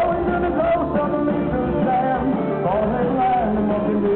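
Live rock band playing electric guitars, bass and drums, heard loud and steady from the audience.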